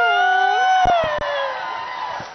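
A woman's long, drawn-out amplified call into a microphone, held for about a second and a half and sliding down in pitch, over a crowd cheering. A few low thumps about a second in.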